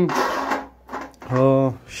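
Plastic fuel filler cap of a petrol water pump's tank being twisted off, a short scraping rasp early on.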